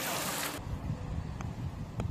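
Wind buffeting the microphone, a low uneven rumble, after a brief hiss that cuts off abruptly about half a second in; a faint click near the middle.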